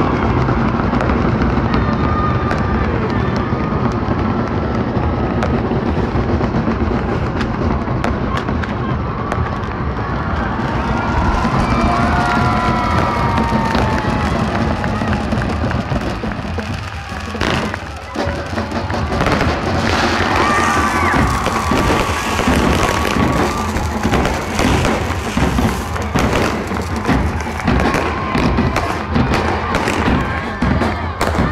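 A large crowd cheering and shouting over music. From a little past halfway, fireworks go off in rapid, irregular pops and crackles as a pyrotechnic spark fountain fires.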